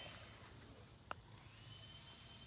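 Crickets singing in a faint, steady high drone, with one short click about a second in from a pair of hand pruning shears at the plant stems.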